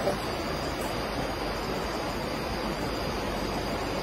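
Steady rushing background noise with a faint, steady high-pitched tone over it; no distinct events.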